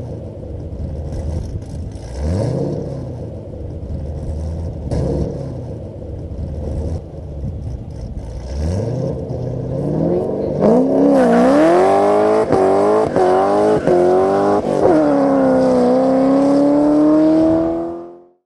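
Chevrolet Camaro accelerating hard, its engine note climbing three times, about every three seconds, as it pulls through the gears. About ten seconds in it turns louder: high revving with the pitch swinging up and down and a hiss over it, typical of a burnout.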